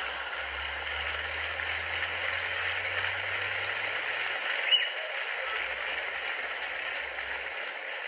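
Large theatre audience laughing and applauding at a punchline, a steady wash of clapping and laughter that eases slightly toward the end.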